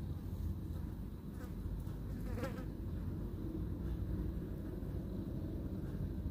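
A steady low buzzing hum, with a faint brief sound about two and a half seconds in.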